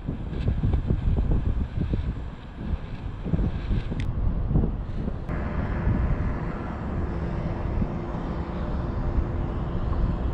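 Wind buffeting the microphone in uneven gusts of low rumble, with a sharp click about four seconds in. From about five seconds in, a steady engine hum joins it.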